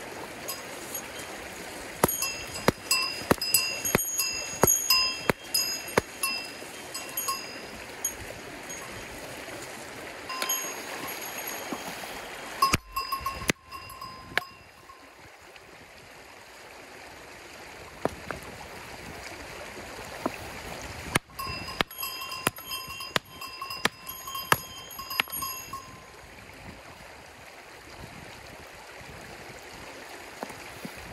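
Steel rock hammer striking stones in bursts of sharp, ringing metallic clinks, about two a second, while searching rocks for fossils. A shallow creek runs steadily underneath.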